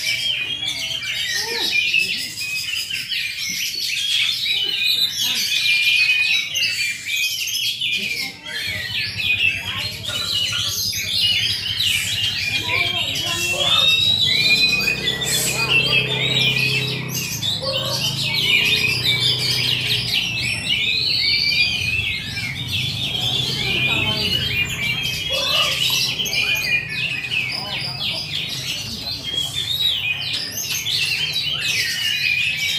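Many caged songbirds singing at once in a bird-singing contest, a dense, continuous tangle of overlapping high chirps, whistles and trills.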